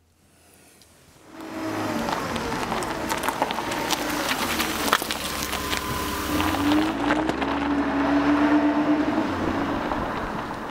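A motor vehicle's engine running, coming in about a second in after near silence, with a low rumble and pitch that shifts up and down.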